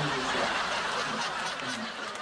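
A studio audience chuckling and laughing together, a steady wash of many voices.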